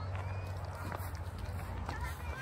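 Wind rumbling on the microphone, with footsteps on a gravel dirt track and faint distant voices.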